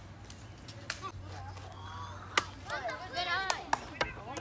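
Kids' voices calling out in the second half, with several sharp clicks or knocks, the loudest about two and a half seconds in.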